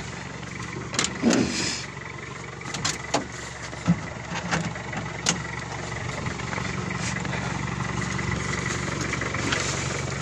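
A car engine idling steadily, with several sharp clicks and knocks in the first five seconds as the car's doors and interior are handled.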